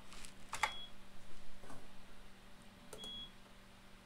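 IBM 3488 InfoWindow display station giving two short, high beeps about two and a half seconds apart as keys are pressed on it. Each beep is its alarm for an invalid key in the setup menu. Faint key clicks come with them.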